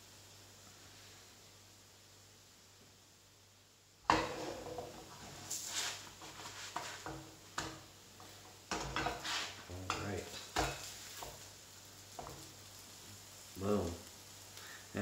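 A spatula scraping and knocking against a nonstick frying pan as slices of French toast are turned, over the sizzle of bread frying in butter. The first few seconds hold only a faint sizzle, then the clatter starts abruptly about four seconds in and goes on in irregular scrapes and taps.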